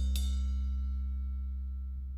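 The last chord of a band song ringing out and slowly fading, the low bass note strongest, with a short click just after it begins.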